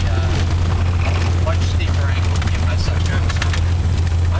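Light aircraft's piston engine and propeller running with a steady low drone, with short fragments of voices over it.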